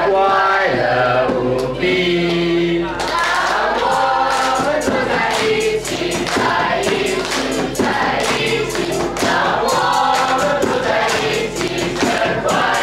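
A group of young voices singing together as a choir. About three seconds in the singing grows fuller and a steady beat of hand claps joins it.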